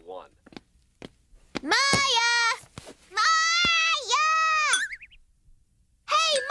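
High-pitched girls' voices calling out twice, long and drawn out. The second call is held for over a second, with a dip in pitch partway through.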